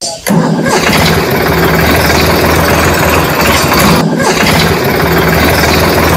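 An engine starting and then running steadily and loudly, with a brief dip about four seconds in.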